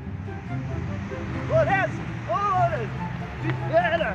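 A young child's high voice giving three short wordless rise-and-fall cries about a second apart, over background music.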